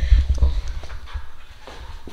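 Small pet dog making small sounds close to the microphone, with low bumps of the phone being handled near the start.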